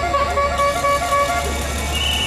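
A pitched, horn-like tone sounding as a quick series of about six short toots, over a steady low hum.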